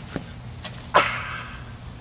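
A dog barking a few short times, with one loud bark about a second in.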